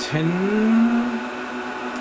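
A man's drawn-out hesitant "uhh" that rises in pitch over about a second, over the steady hum of a running IBM/Lenovo System x3650 M4 server.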